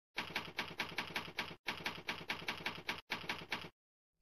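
Typewriter keys striking in a rapid, even run of about six or seven clacks a second, twice broken by a brief pause, as a typing sound effect.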